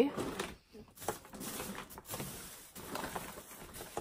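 Rummaging through a pile of assorted items by hand: rustling and light clicks and knocks as things are moved aside.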